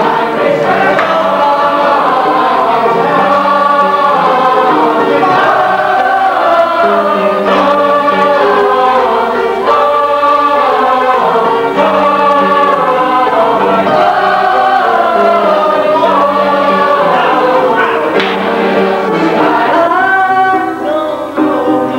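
A chorus of many voices singing together in long held notes that step from pitch to pitch.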